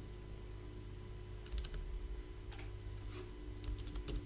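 Computer keyboard being typed on in a few short runs of key clicks, the first about a second and a half in, over a faint steady hum.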